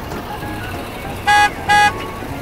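Golf cart's electric horn giving two short beeps in quick succession about a second in, each one steady pitch, over steady street traffic noise.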